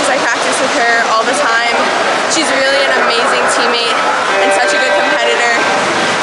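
A young woman speaking over the steady noise of an indoor pool hall.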